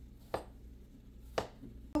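Two sharp knife strokes on a cutting board, about a second apart, as food is chopped with a chef's knife.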